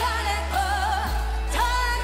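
Pop song with a woman singing long held notes with vibrato over a steady bass line that shifts to a new note about a second in.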